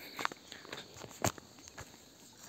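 Footsteps on dry grass and stony ground: a few uneven steps, the loudest about a second and a quarter in.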